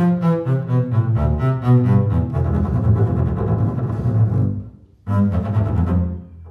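Double bass played with the bow: a quick run of short, separate notes, then a denser passage that fades away about four and a half seconds in, and a new phrase begins about a second later.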